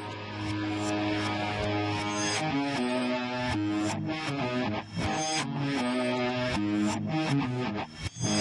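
Hard rock music, instrumental: an electric guitar riff of shifting notes over a steady beat, the band coming in fully about half a second in.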